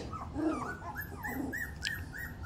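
Three-week-old puppies whimpering: a quick run of short, high, arched little calls, about four a second, starts about a second in over fainter, lower whines.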